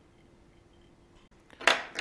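Quiet room tone with a faint steady hum, then a brief metallic clink near the end as fly-tying tools are handled.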